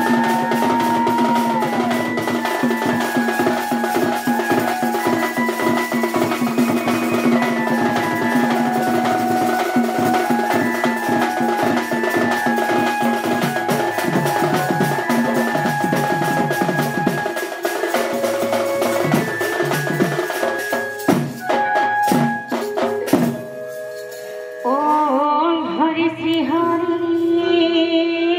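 Live stage folk music: fast, dense drumming under a sustained melody line. About 23 seconds in the drums break off, and a woman starts singing into a microphone in a wavering, ornamented voice.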